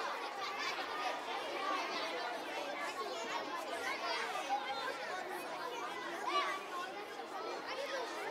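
Indistinct chatter of many voices talking at once in a large hall, with no music playing.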